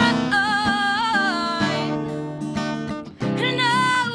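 A woman singing over an acoustic guitar: held, wavering sung notes over strummed chords. Both drop away briefly about three seconds in, then the voice and guitar come straight back in.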